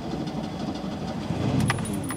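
ZAZ Tavria's engine running, a steady low rumble heard from inside the cabin, with a couple of short clicks near the end.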